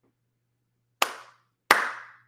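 Two hand claps, about two-thirds of a second apart, the second louder; each dies away quickly.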